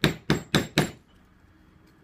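Mallet striking a metal undercut beveler into damp tooling leather on a granite slab: four quick, sharp strikes, about four a second, in the first second.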